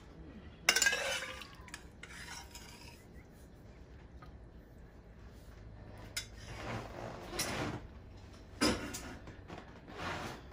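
A serving utensil scraping and clinking against cookware and a plate as string beans and potatoes are spooned out. There is a sharp clink about a second in and longer scrapes near the end.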